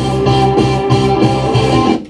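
A band's multitrack mix played back over studio monitors during mixing: sustained low bass notes with regular drum hits, which cuts off abruptly at the very end.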